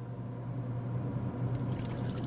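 Soaking water draining off navy beans as a stainless steel bowl is tipped over a sink, a steady running-water sound that gets louder about halfway through, with a steady low hum underneath.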